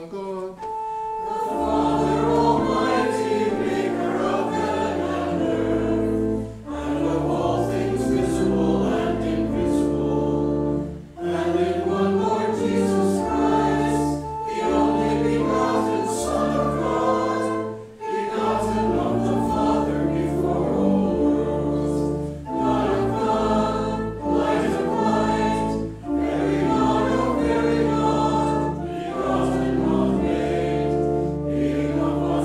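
Organ and voices singing a hymn together: sustained chords over a deep bass, in lines of a few seconds each with brief breaks between them.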